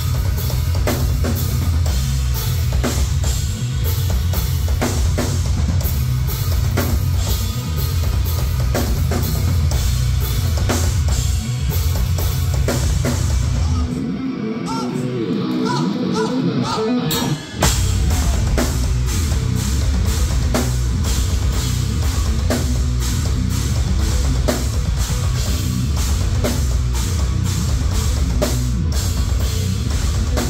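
Heavy metal band playing live and loud, with dense drums, a fast kick drum and heavy low guitar and bass. About 14 seconds in the drums and low end drop out for a few seconds, leaving a thinner, higher part, then the full band comes crashing back in.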